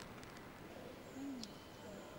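Faint room tone with a brief, low murmured 'hmm' from a person about a second in, its pitch rising then falling, followed by a single light tick.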